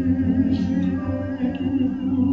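A male singer holding a long, steady note through a handheld microphone over backing music.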